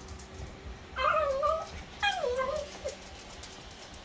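Small husky-type dog whining twice, two drawn-out wavering calls about a second apart, the second sliding down in pitch: the dog asking to go outside, as its owner reads it.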